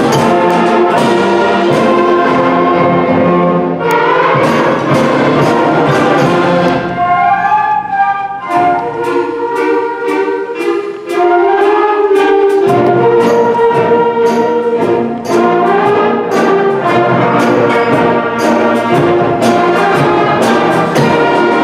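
Middle school concert band playing, brass and woodwinds over a regular percussion beat. About eight seconds in the low brass drops out for a lighter passage, and the full band comes back in some four seconds later.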